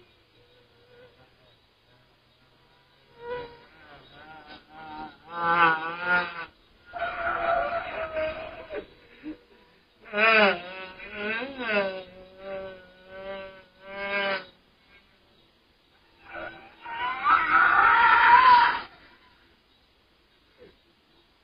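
Voice-like wailing and moaning with a wobbling, wavering pitch, in four drawn-out bursts with short gaps between them.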